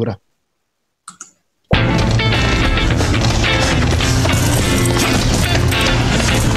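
A Mercedes-Benz B-Class TV commercial song with a sung vocal, played back over a video-call screen share, starting abruptly out of silence a little under two seconds in and then running steadily, with a heavy bass.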